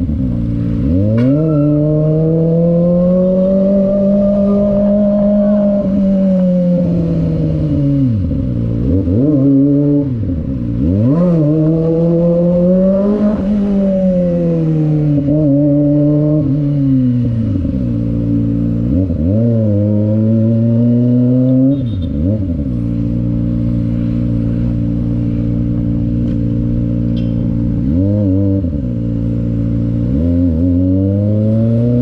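Kawasaki Ninja sportbike's inline-four engine under way, its revs climbing and falling with the throttle. Several sharp drops and quick climbs in pitch, then a steadier cruising note through the latter half before another dip and rise near the end.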